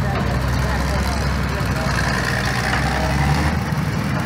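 Gravely tractor engines running steadily under background voices. The lowest part of the engine sound drops away shortly before the end.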